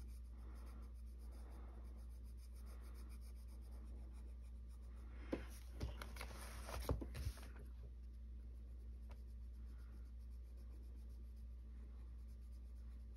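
Colored pencil being stroked across a coloring-book page, a faint steady scratching. Near the middle come a few louder rubs and light knocks as the hand shifts on the paper.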